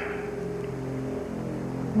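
Background music score of sustained low notes, with one held note giving way to another about a second in.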